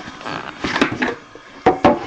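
An Upper Deck The Cup hockey card tin being handled: light rustling and scraping with a few sharp clicks and knocks, the loudest pair near the end.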